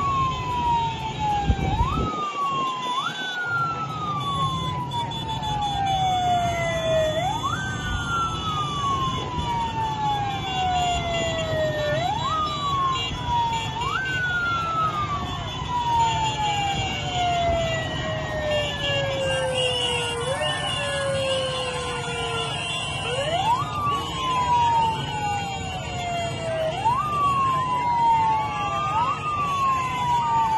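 A siren wailing over and over, each cycle rising quickly in pitch and then falling slowly, at uneven intervals, over the steady low din of many motorcycle engines.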